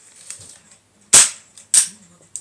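A UK Arms 8946 spring-powered airsoft pistol firing a BB: a sharp pop about a second in, followed about half a second later by a second, similar snap.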